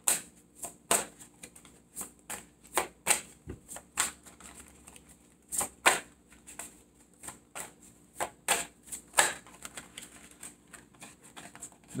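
A thick tarot deck being shuffled by hand: a run of irregular, crisp card clicks and slaps, a few a second.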